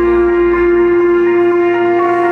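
Live metal band music: one held note with a rich stack of overtones rings on steadily, and the deep bass falls away about a second in.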